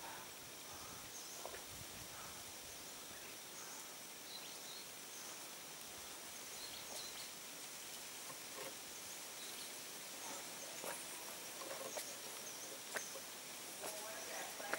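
Faint outdoor ambience: a steady high hiss with scattered short bird chirps and a few light clicks.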